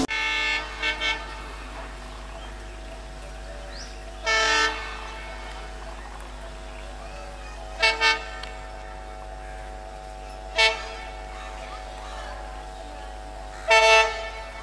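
WDM-3D diesel locomotive's horn sounding short toots: a quick double toot about half a second in, a longer single blast at about four seconds, another double near eight seconds, a single near eleven seconds and a double near the end. A steady low background noise runs under the horn.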